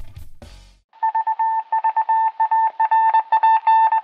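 Music fading out in the first second, then a single high beep switched on and off in quick, irregular short and long pulses, like Morse code or telegraph keying.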